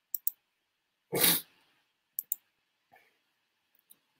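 Sharp computer keyboard keystrokes in quick pairs while text is typed, with a few fainter clicks. A louder, short noisy burst comes about a second in.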